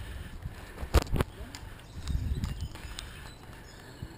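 Wind and road rumble on a moving camera, with two sharp clicks a fraction of a second apart about a second in.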